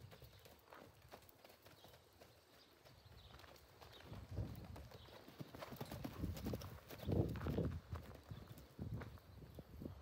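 Hoofbeats of a sorrel mare and foal trotting and loping on dry, loose dirt: soft, uneven thuds, faint at first and louder from about four seconds in as the pair passes close by.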